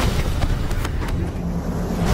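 A deep, steady low rumble with a few short, sharp hits in the first second.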